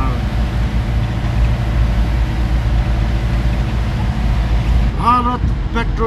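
Steady low rumble of a moving car heard from inside the cabin: engine and tyre-on-road noise while driving. A brief voice cuts in near the end.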